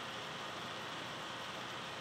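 Steady, even hiss of background room noise, with no distinct strokes or knocks.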